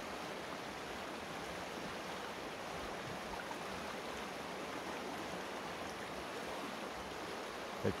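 Steady rush of a creek's water running over rocks, even and unbroken throughout.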